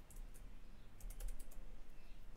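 Computer keyboard keys clicking: two single taps, then a quick run of about five keystrokes in the middle.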